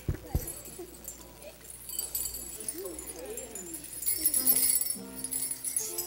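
Small handheld jingle bells shaking and jingling unevenly, with two low microphone knocks right at the start. Near the end, held musical notes of an accompaniment begin under the bells.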